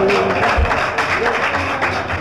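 Instrumental passage of Pashto ghazal music: a plucked string instrument playing a fast, busy line, with a few low beats underneath.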